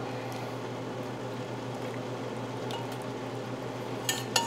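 A steady low hum with an even hiss, with no distinct knocks or clinks.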